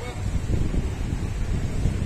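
Wind buffeting the microphone: a dense, uneven low rumble.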